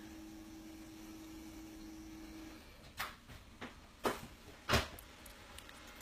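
A faint steady hum that stops about two and a half seconds in, followed by four short light knocks or clicks, like small objects being handled.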